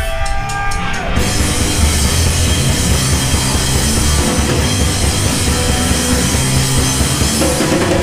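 Live heavy rock band with distorted electric guitar, bass guitar and drum kit. A held guitar note and a few quick, evenly spaced clicks open the song, then the full band comes in loud about a second in and keeps playing.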